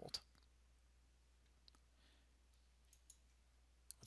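Near silence with a few faint, scattered computer mouse clicks over a faint steady low hum.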